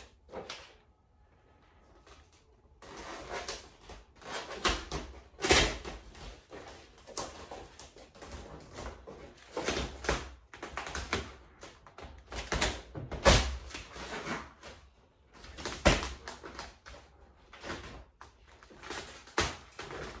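Vinyl wrap film being handled, stretched and pressed onto a car body by hand: irregular rustles and sharp crackles, a few much louder than the rest, after a quiet first couple of seconds.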